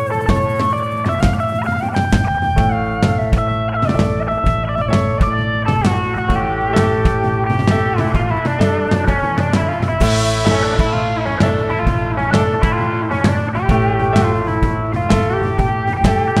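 Live blues-rock band playing an instrumental passage: an electric guitar carries a lead line over drums, bass and keyboard, with a cymbal crash about ten seconds in.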